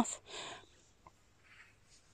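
A short soft breath just after speech, then near silence with only a faint tick and a faint brief soft sound later on.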